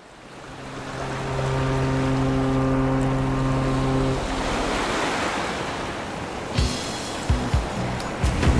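Rough sea waves washing, fading in from silence over the first second or so. A low sustained tone with several overtones runs under the waves for about the first four seconds, and a few short thumps come near the end.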